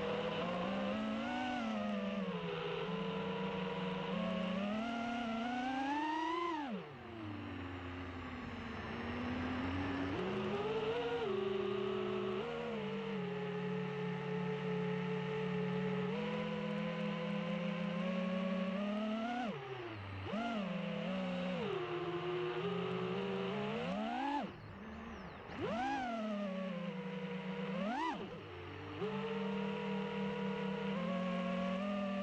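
FPV quadcopter's brushless motors whining, the pitch steady while cruising and swooping up then dropping sharply with throttle punches and chops, once about a quarter of the way in and several times in the last third.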